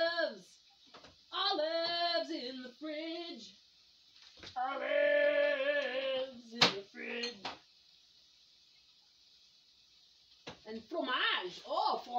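A woman's voice in short sing-song or sung phrases, including one long held note about halfway through, with a single sharp click just after it; a pause of quiet follows, and her voice returns near the end.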